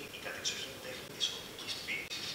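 Soundtrack of an animated cartoon playing over hall speakers: short, high-pitched cartoon calls, about four or five of them in quick succession, some gliding in pitch.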